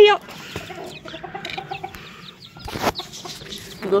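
Chicken clucking softly in a run of short low notes, with a single brief knock or rustle a little under three seconds in.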